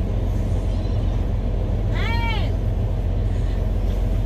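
Steady low rumble of an idling truck engine heard from inside the cab. About two seconds in, the small dog gives a single short whine that rises and falls in pitch.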